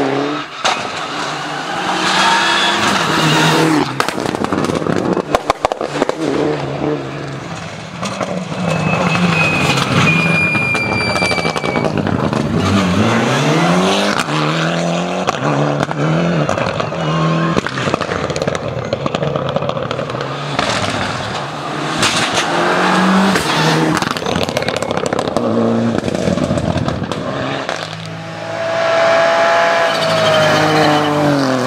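Rally cars driven flat out, one after another: engines revving hard, their pitch climbing and dropping again and again through gear changes and braking. Several sharp bangs come between about four and six seconds in.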